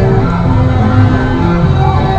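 Merry-go-round music playing loudly, a tune of held notes that change every fraction of a second over a steady low accompaniment.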